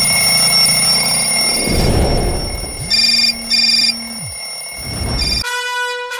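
Bell alarm clock ringing loudly and steadily, with two short beeps about three seconds in. The ringing cuts off near the end and music led by a trumpet starts.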